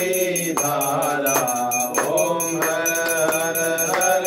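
Devotional Hindu aarti song: a voice singing a mantra-like chant in short phrases over steady music accompaniment.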